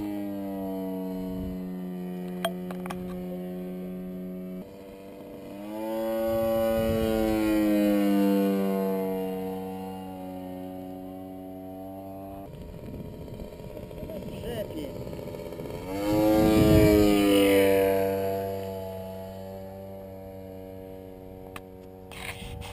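Engine of a large radio-controlled P-51 Mustang model droning steadily as the plane flies. Its pitch rises and falls as it makes passes, once about six seconds in and again, louder, about sixteen seconds in.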